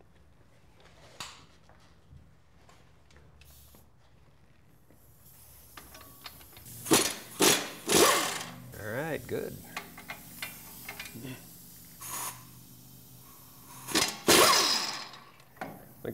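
Pneumatic impact wrench (air gun) on a 21 mm socket, run in several short bursts from about five seconds in, with a longer burst near the end, to break loose and spin out the caliper mounting bracket bolts.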